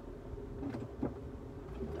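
Low, steady rumble of a car's interior, with a faint click about a second in.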